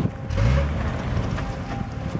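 A 4x4 SUV's engine running at low speed as it crawls up a rocky trail, with a brief low surge about half a second in, and wind buffeting the microphone.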